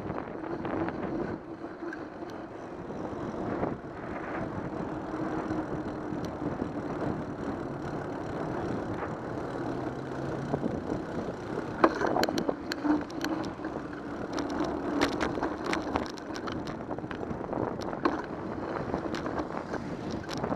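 Riding noise picked up by a bicycle-mounted camera: a steady rush of wind and road noise. A run of sharp clicks and rattles comes about twelve seconds in and lasts a few seconds.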